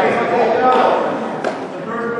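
Voices shouting from the sidelines of a wrestling mat, long held calls rather than conversation, with a single thump about a second and a half in.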